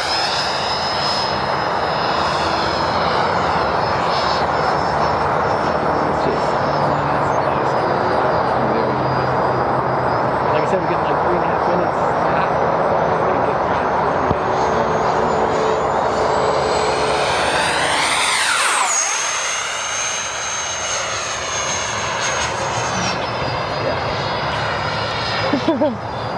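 Freewing F-18 90 mm electric ducted fan RC jet in flight: a steady high-pitched fan whine over rushing air. About two-thirds of the way in the whine jumps higher as the throttle goes up, with a sweeping swoosh as the jet passes, then drops back to its lower pitch a few seconds before the end.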